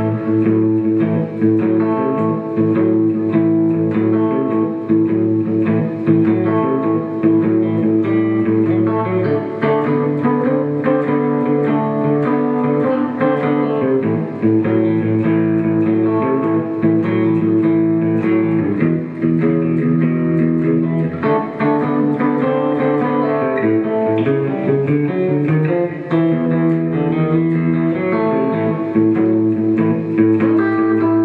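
Fender Stratocaster electric guitar played fingerstyle: a blues shuffle with the thumb picking a steady bass line while the fingers alternate between rhythm and lead lines.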